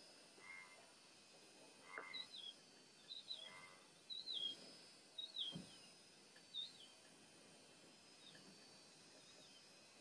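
Faint bird calls: a run of short chirps that each drop in pitch, about seven of them, repeating every second or so, with a few flatter, lower notes in the first few seconds, over a faint steady hiss.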